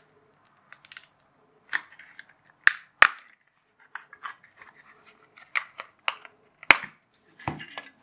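Plastic casing of a Fujitsu Lifebook laptop battery being prised apart by hand, the case clicking and cracking as it gives along its cut seam. A run of small clicks and creaks, with three sharp cracks: two close together a little under three seconds in, and one more near the end.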